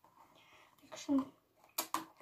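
A hard glasses case being handled, clicking sharply twice in quick succession near the end.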